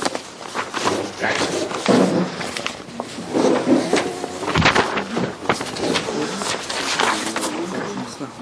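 Indistinct talk in a room, mixed with rustling and sharp clicks of paper handout sheets being handled and passed along rows.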